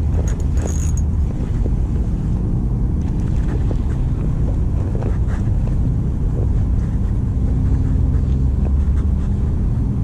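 Steady low rumble of distant road traffic, with a few faint clicks from the spinning reel in the first second.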